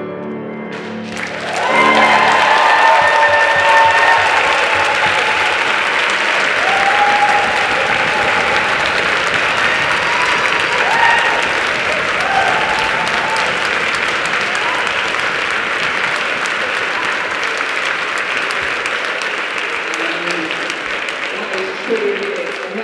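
The final held chord of male voices and piano fades, and about a second and a half in a large audience starts applauding, loud and steady, with cheering over the clapping for the first ten seconds or so.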